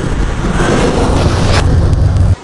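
A loud, dense rumbling noise with a heavy low end and a rough hiss above it.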